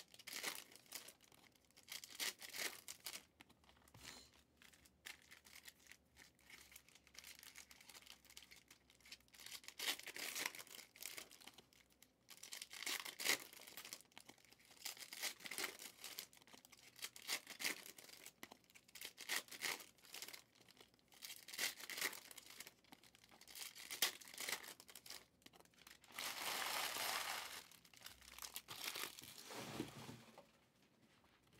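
Faint rustling and crinkling of trading cards and their packaging being handled and sorted by hand, in short irregular bursts, with one longer rustle near the end.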